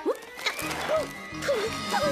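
Cartoon background music, with a squirrel character's squeaky, sliding chatter over it.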